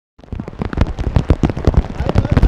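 Heavy rain beating on the fabric roof of a pop-up canopy tent: a dense, uneven run of sharp drop impacts that starts abruptly.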